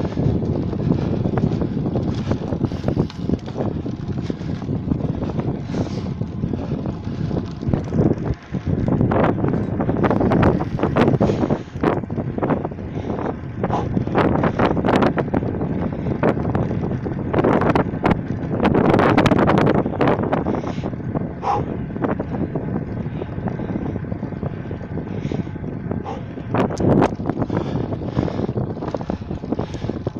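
Wind rushing over the microphone of a camera carried on a moving bicycle, with a steady low rumble and frequent short knocks from riding over rough, patched asphalt.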